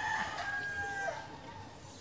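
A rooster crowing faintly: one drawn-out crow that falls away about a second in.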